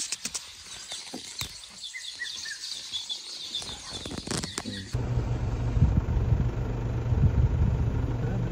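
Small birds chirping in short repeated notes. About five seconds in, this gives way to the steady low hum of an idling vehicle engine.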